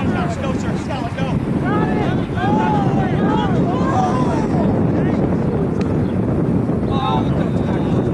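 Wind buffeting the microphone in a steady rumble, with distant shouting from players and sideline spectators in several short calls during the first half and again near the end.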